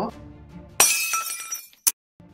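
An edited-in sound effect with the 'Subscribe' animation: a sudden glassy crash, like glass shattering, whose ringing fades over about a second, followed by one short sharp click.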